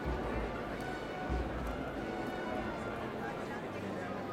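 A large street crowd talking in a steady murmur of many overlapping voices, with faint music in the distance and a couple of low bumps in the first second and a half.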